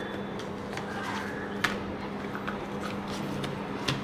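Cardstock pages of a handmade accordion-fold mini album being handled and folded: faint rustles and a few light taps, the sharpest about one and a half seconds in. A steady low hum runs underneath.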